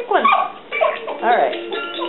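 Electronic music from a Brainy Baby music toy starts suddenly, and an Alaskan Malamute howls and yowls along with wavering, falling pitch.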